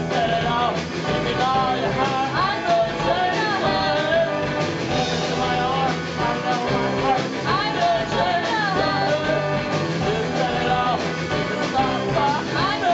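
Live garage-rock band playing loudly: a drum kit and electric guitar, with a woman singing in a wavering high voice.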